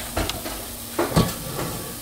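Hot air-fried chicken sizzling with a soft hiss in the open air-fryer basket, under a low steady hum, with a couple of light knocks from the basket being handled about a second in.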